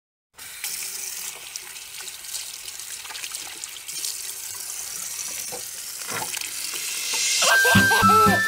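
Water running from a bathroom sink tap into the basin: a steady splashing hiss that starts abruptly just after the opening moment of silence. Music comes in near the end, louder than the water.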